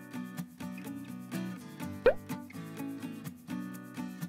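Background music with a light, steady beat. About halfway through, a short upward-sliding pop, an editing sound effect, is the loudest sound.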